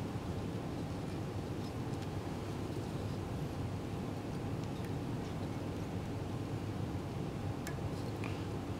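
Steady low background hum of room tone, with one faint tick near the end.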